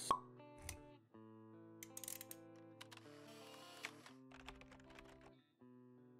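Quiet logo-sting music: soft held notes, with a sharp pop right at the start and a few light clicks scattered through.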